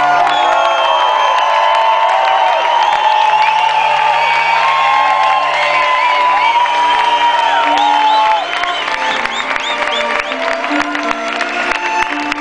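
A live band with double bass, drums, horns and strings playing a jam, with held low notes under sliding higher tones, and a crowd cheering and whooping over it. The music drops in level about eight seconds in.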